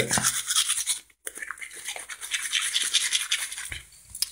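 Toothbrush scrubbing against teeth in quick, uneven strokes, with a brief pause about a second in.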